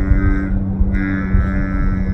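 A woman's voice holding one long nasal "nge" hum at a steady pitch, imitating the whine of a dental drill cutting into a wisdom tooth.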